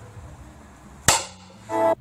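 A single sharp hit, like a cartoon impact sound effect, about halfway through, followed near the end by a short, steady pitched tone.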